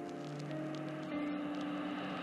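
Post-hardcore band playing a quiet, drumless passage: electric guitars holding sustained, ringing notes that change pitch about half a second and about a second in.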